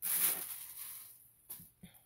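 Rustle of a cotton dust bag being handled: a sudden burst of swishing cloth noise that fades over about a second, followed by two faint clicks.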